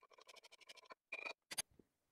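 A bar spoon stirring a drink in a glass mug, clinking lightly and rapidly against the glass at about ten clinks a second, faint. The stirring stops about a second in, followed by two brief clinks.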